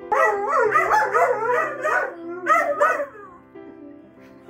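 Dog howling in long cries that waver up and down in pitch, in two stretches with a short break a little past halfway.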